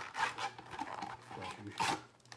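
Foil-wrapped trading-card packs rustling and scraping against each other and the cardboard box as a handful is pulled out, an irregular crinkly rubbing.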